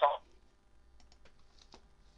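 A voice over a phone line breaks off at the very start. It is followed by a few faint, scattered clicks, like typing on a computer keyboard.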